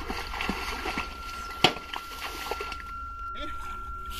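Water splashing and sloshing as a person swims through a shallow pond, with one sharp slap about one and a half seconds in.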